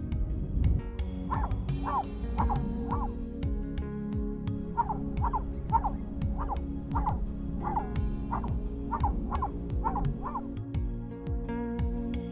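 A terrier barking repeatedly in short high yaps, about two a second, with a pause of a couple of seconds after the first few. Background music with steady low notes plays underneath.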